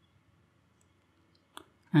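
Near silence, then a single short click about a second and a half in.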